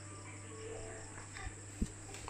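Faint background music under a steady low electrical hum, with a single short click near the end.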